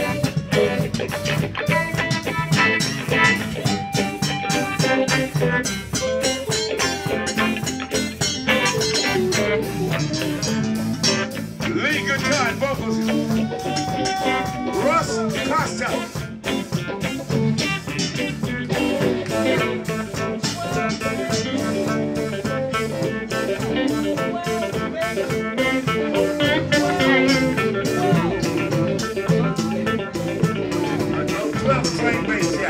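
Live band playing a funk groove: electric bass, electric guitar and drums, through a steady beat.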